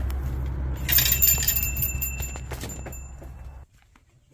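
A shop's glass front door being pushed open, with a door bell jingling about a second in and ringing out over the next two seconds. A low steady rumble runs underneath and cuts off suddenly near the end.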